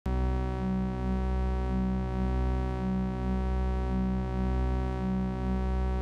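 Eurorack modular synthesizer playing a steady low drone rich in overtones, with a slow pulsing wobble in the middle of its sound about once a second.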